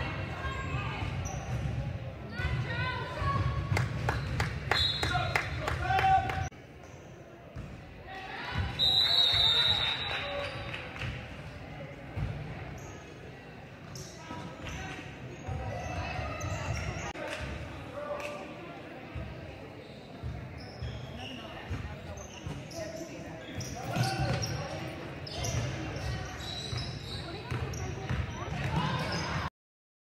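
Basketball game in an echoing gymnasium: the ball bouncing on the hardwood floor, with players and spectators calling out. The sound stops abruptly just before the end.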